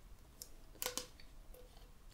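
Hands handling a plastic cocktail shaker cup: a few light clicks and taps, the two loudest close together about a second in.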